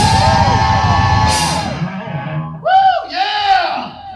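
Live rock band playing loud: a held distorted guitar chord over drums, fading out about two and a half seconds in. Loud yelled voice calls follow near the end.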